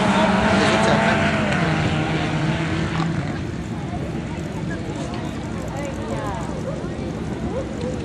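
Engines of several Kart Evo autocross buggies racing away on a dirt track: a loud, steady drone for the first three seconds, then fading to distant engine noise as the pack moves off.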